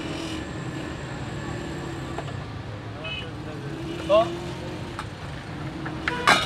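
Steady street background of road traffic with people's voices. A short, loud rising sound comes about four seconds in.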